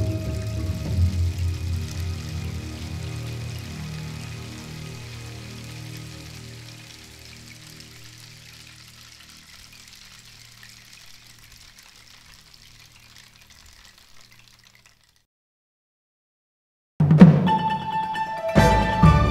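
Gamelan gongs and bronze metallophones ringing on after the last strokes of a movement, their low sustained tones slowly dying away over about fifteen seconds. After two seconds of silence, the next movement begins with a loud percussive attack and full ensemble music near the end.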